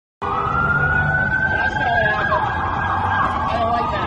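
Emergency vehicle siren wailing: a slow rise in pitch, a drop about two seconds in, then a slow rise again, over street rumble.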